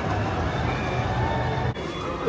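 Amusement-park ambience beside a spinning chair-swing ride: a steady low rumble with faint music. It cuts off abruptly near the end.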